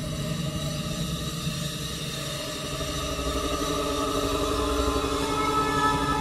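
Background music: sustained electronic tones with a low drone, slowly building in loudness.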